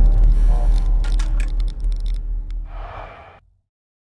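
Deep low rumble of an outro logo sound effect, dying away with scattered crackles and a short hiss, then cutting to silence about three and a half seconds in.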